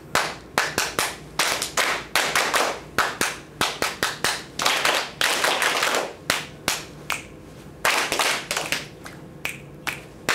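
Call-and-response body-percussion rhythms of finger snaps and hand claps: a teacher sets a short rhythm and a class of children echoes it back together, their snaps and claps landing as ragged, smeared bursts.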